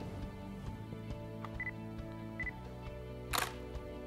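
A DSLR on a tripod gives two short high beeps, its autofocus confirmation, then fires its shutter with one sharp click about three and a half seconds in, taking a test shot. Quiet background music plays under it.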